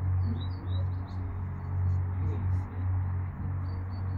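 Small birds chirping a few short high notes, mostly in the first second, over a steady low rumble.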